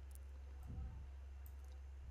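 Faint computer clicks, a few scattered through the moment, as clips are copied and pasted in an editing program, over a steady low hum.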